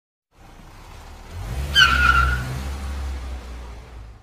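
Car sound effect: a car driving in with a low engine hum that builds, and a short tyre squeal about two seconds in, the loudest moment, before the sound fades away.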